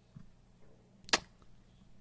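A single sharp computer mouse click about a second in, over a faint low hum.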